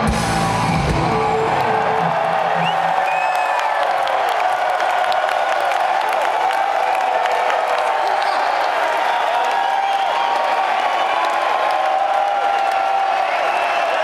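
A large arena concert crowd cheering and whooping, many voices yelling over one another. A low sound from the stage stops about a second and a half in, leaving only the crowd.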